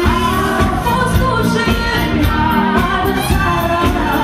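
A woman singing live into a microphone over amplified band music with a steady beat.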